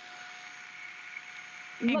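Shark Apex DuoClean stick vacuum running on a hard floor: a steady suction hiss with a faint motor whine. A voice begins just before the end.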